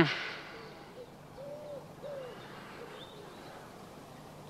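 A pigeon cooing faintly, a few short arched notes in the middle, over quiet outdoor ambience with a steady faint low hum.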